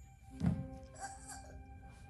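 A large inflatable exercise ball thumps once on the carpeted floor about half a second in. Soft music with long held notes plays from the TV after it.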